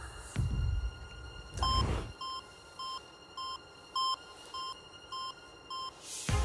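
Game-show heartbeat sound effect: low heartbeat thuds about once a second, a swelling whoosh just under two seconds in, then short electronic beeps roughly every 0.6 seconds, a heart-monitor beep keeping pace with the contestant's pulse of about 100 beats per minute.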